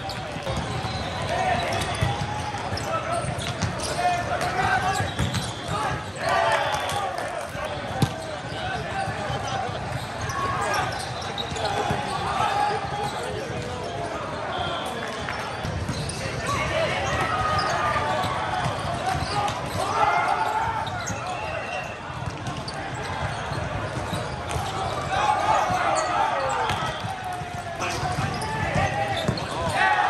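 Volleyballs being struck and hitting the court during play, with players' shouts and crowd voices throughout. The sharpest, loudest hit comes about eight seconds in.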